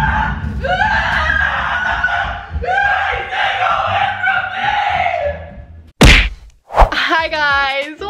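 A young woman screaming "oh my god" in fright, in long held shrieks for about five seconds. A sharp whack about six seconds in, then a woman laughing near the end.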